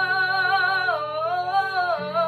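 A young female voice holds one long sung note, its pitch dipping about halfway through and sliding back up, over a steady low backing chord.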